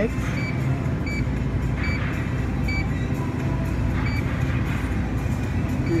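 Mettler Toledo produce scale's touchscreen beeping at each key press as a PLU number is entered, five short high beeps about a second apart, over a steady hum of store background noise.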